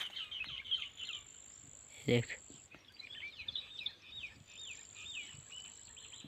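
Small birds calling in a quick run of short, swooping chirps, while an insect's thin, high, steady buzz comes and goes twice.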